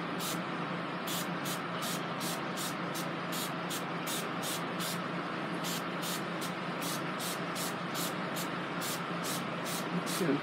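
Pump spray bottle of oil-free wig shine being spritzed onto a synthetic wig: quick short hissing squirts, about three a second, pausing briefly about halfway through.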